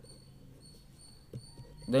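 Faint scratching of a ballpoint pen writing on paper.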